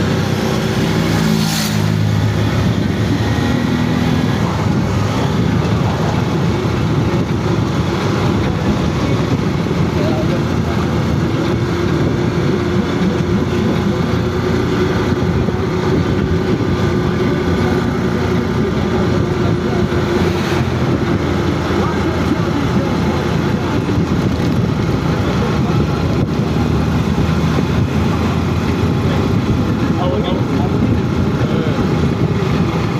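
Motor vehicle running steadily along a road, its engine and road noise close to the microphone, with a steady hum through the middle stretch.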